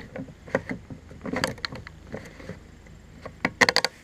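Yellow plastic pour-spout cap being fitted and twisted onto a red plastic gas can: scattered light plastic clicks and scrapes, then a quick run of sharp clicks a little after three and a half seconds in.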